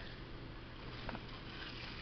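Steady rain falling during a thunderstorm, an even soft hiss, with a faint click about a second in.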